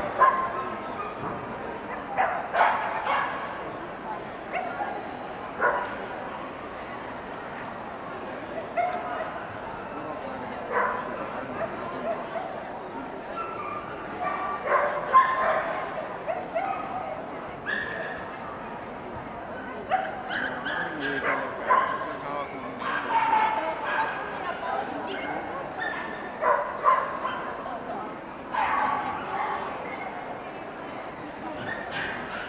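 Dogs barking and yipping in short, sharp calls at irregular intervals, over a steady background of crowd chatter.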